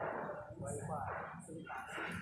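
Indistinct voices of people talking in the background.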